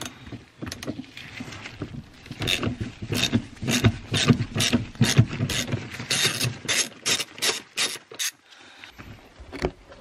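Socket ratchet on a long extension clicking in quick, repeated strokes as it backs out a 14 mm front seat mounting bolt. The clicking stops about eight seconds in, with one more sharp click near the end.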